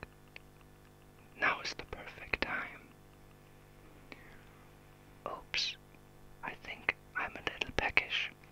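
A man whispering close to the ears of a 1974 AKG D99c binaural dummy-head microphone, ASMR-style, with small mouth clicks, in three short whispered phrases with pauses between. He moves around the head from one ear to the other, so the whisper shifts from side to side.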